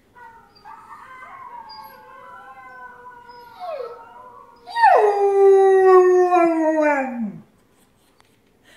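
German Shepherd howling: quiet, wavering tones at first, then one long, loud howl about five seconds in that holds a steady pitch and sinks lower as it fades out.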